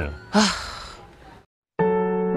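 A man's long, breathy sigh that fades away, then a moment of silence before soft electric-piano music starts near the end.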